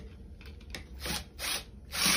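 A few short, faint rubbing and scraping sounds as a paintbrush spinner and brush are handled in a metal coffee can of water, just before the drill driving it is switched on.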